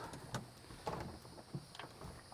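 Fat-tire e-bike rolled over wooden deck boards, its 4-inch front tire pushed into a metal wheel-slot floor stand: a few faint, irregular clicks and knocks.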